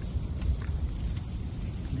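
Steady low rumble of a New Holland T7 190 tractor and its baler burning in the open, mixed with wind on the microphone, with a few faint crackles.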